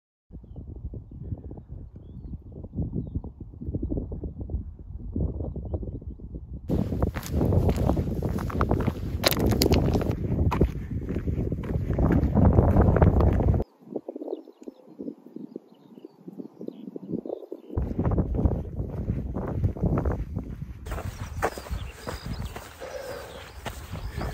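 Footsteps crunching steadily on a gravel track, over a low wind rumble on the microphone. The sound changes abruptly a few times and thins out briefly about two-thirds of the way through.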